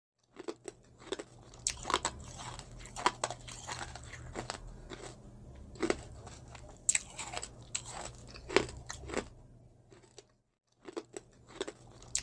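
Close-miked eating: a person biting and chewing crunchy food, a quick string of sharp crunches over a low steady hum, broken by a short silent gap near the end.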